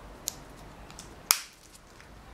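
Clicks from the snap fastener on the side strap of a stitched blue faux-leather cylindrical makeup brush case being worked: a faint click, then a louder sharp snap a little past the middle.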